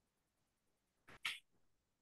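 Near silence broken about a second in by one short, sharp two-part burst of noise.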